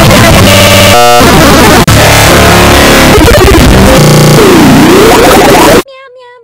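A Meow Mix cat-food commercial's soundtrack, its music and voices layered on top of one another and heavily distorted and clipped at full volume, with the pitch sweeping down and back up several times. It cuts off abruptly near the end.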